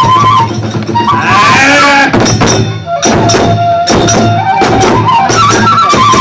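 Kagura festival music: a high bamboo flute melody over repeated drum strokes and small hand-cymbal clashes.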